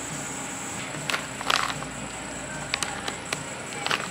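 Brief rustling and crackling as a plastic dog-treat pouch and the camera are handled, a few short bursts about a second in and again near the end, over steady shop background noise.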